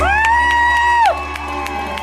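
A live band holds the final chord of a song. Over it, a high-pitched whoop swoops up, holds for about a second and breaks off, and then audience cheering and clapping come in.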